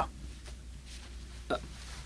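A pause between spoken lines: a faint steady low hum, broken about one and a half seconds in by one very short voice sound.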